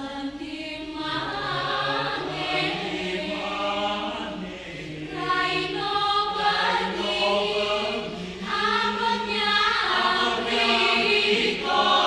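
Mixed choir of women's and men's voices singing a Banyuwangi folk song a cappella, held chords swelling phrase by phrase and growing louder toward the end.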